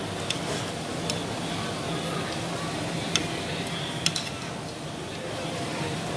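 Busy food-court background chatter with a few sharp clinks of chopsticks and utensils on bowls and plates, the loudest about three and four seconds in.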